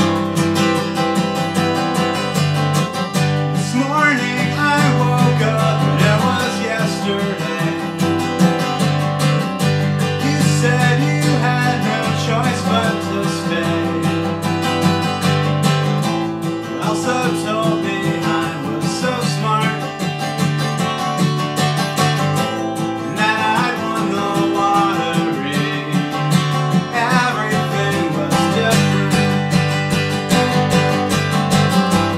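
Steel-string dreadnought acoustic guitar with a capo on the neck, strummed in a steady chord pattern.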